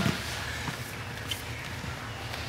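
Faint shuffling of two people in gis repositioning on a vinyl-covered foam mat, with a few soft scuffs over a steady low room hum.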